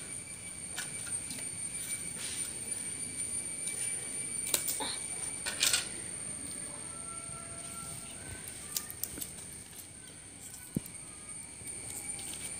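Quiet background with a steady high-pitched insect drone and a few light clicks around the middle.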